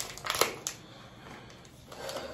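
A pregnancy test's sealed wrapper being torn open by hand: a few sharp crackling tears in the first second, the loudest about half a second in, then softer rustling of the wrapper.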